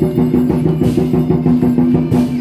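Chinese war drums played fast and loud for a lion dance, a dense rapid drumming that keeps up throughout, with a sharp crash a little under a second in.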